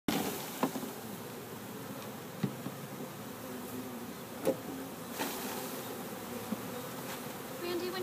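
Many honey bees buzzing in the air around an open hive, a steady hum, with a few short sharp knocks spread through it.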